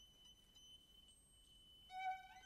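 Near silence, with faint background music: a single high note held steadily.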